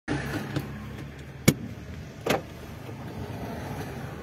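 A car engine running steadily, with road traffic. Sharp knocks cut through it about half a second in, again at about a second and a half (the loudest), and just after two seconds.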